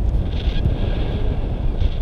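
Airflow buffeting an action camera's microphone in a tandem paraglider in flight: a steady, dense low rumble of wind noise.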